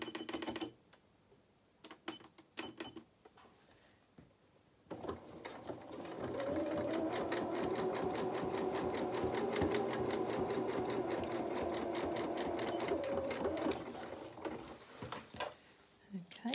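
Electric sewing machine sewing a zigzag stitch to neaten a seam edge. After a few brief clicks, the motor starts about five seconds in and runs steadily at speed with rapid, even needle strokes for about eight seconds, then slows and stops.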